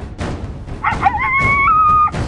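A canine howl over intro music with a drumbeat about twice a second. The howl comes in a little before the middle, wavers and rises in pitch, then holds and cuts off near the end.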